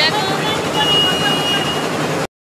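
Motor scooter engine running close by, with people's voices over it.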